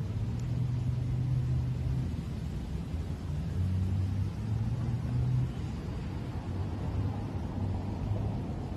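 A steady low rumble, with a faint hum that wavers and comes and goes; nothing sounds higher up.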